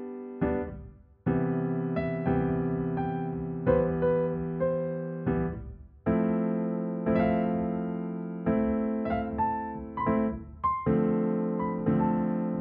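Solo piano improvising slowly: held chords in the lower-middle range, re-struck every second or so, with a gentle melody of single notes above. The sound dies away briefly about a second in and again around halfway before the next chord.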